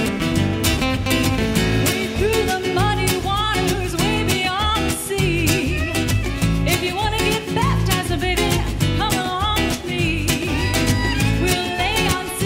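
Live band playing a song with strummed acoustic guitar and a steady beat, and a woman's voice singing over it from a few seconds in.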